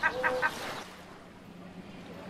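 A bird calling three quick times, one after another, then a quieter background with a low steady hum.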